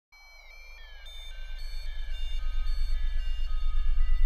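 Electronic intro sting: high synthesised tones stepping down in pitch over a fast-pulsing low bass, swelling steadily louder throughout.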